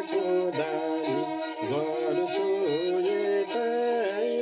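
A man singing a Nepali folk song in a wavering, sliding voice, accompanying himself on a bowed Nepali sarangi that holds steady notes beneath the melody.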